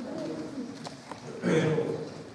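A person's voice making short vocal sounds, the loudest about one and a half seconds in, with a couple of light clicks in between.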